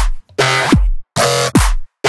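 Resampled dubstep bass pattern playing back in Ableton Live: about three short growling bass stabs, each with a quick downward pitch sweep into deep sub-bass, separated by brief silent gaps.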